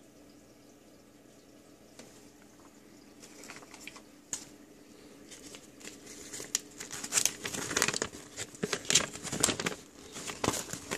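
A folded paper instruction leaflet being handled and unfolded: rustling and crinkling paper, faint at first, growing louder from about three seconds in and loudest near the end.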